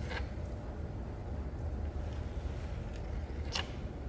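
A knife cutting through a soft, wet clay slab on a work table, heard as two short faint scrapes, one at the start and one near the end, over a steady low hum.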